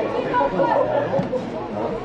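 Several voices talking and calling out at once, overlapping, with no single voice standing out. These are players and people around the pitch during open play in a football match.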